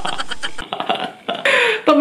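A man laughing hard in rapid, breathy, guttural pulses. The laughter dies down in the middle, then a fresh burst comes near the end.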